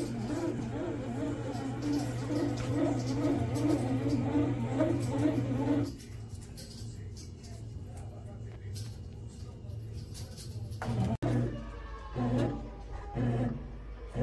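Neretva bread maker running as its paddle kneads dough: a steady low motor hum, with a repeating pulse over it in the first half.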